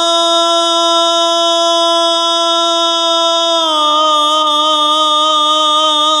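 A male reciter's voice chanting an Arabic supplication, holding one long note. A little over halfway through the note drops slightly in pitch and takes on a gentle waver.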